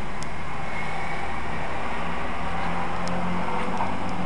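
Car driving at a steady pace, with a continuous low engine hum and road noise. A few faint clicks sound over it.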